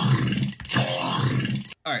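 Wet growl bass from a Serum synthesizer patch built on Alien Spectral wavetables pitched down low: a buzzy, vowel-like synth bass growl, recorded off a phone microphone. It cuts off shortly before the two-second mark.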